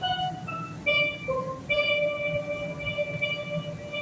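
Steelpan played solo in a slow melody: a few short notes stepping down, then one long note held for about two seconds.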